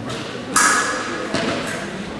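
Épée blades clashing twice, each contact a sharp metallic ring, the first about half a second in and louder, the second about a second later.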